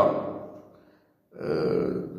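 A man's voice making drawn-out sounds between phrases: a held sound fading away over the first half second or so, a brief silence, then another held vocal sound starting a little after the middle.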